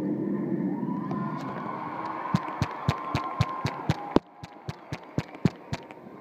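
Crowd cheering and applauding in a large gym at the end of the dance, with one close pair of hands clapping steadily about four times a second near the microphone. The crowd noise drops away suddenly about four seconds in, and the close claps carry on.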